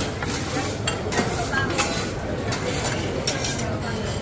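Omelettes frying in a pan on a gas burner and on a flat griddle at a buffet cooking station: a steady sizzle, with several short clinks of metal utensils and pans.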